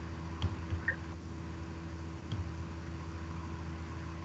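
Steady low electrical hum and faint hiss of an open conference-call audio line, with a few faint clicks in the first half.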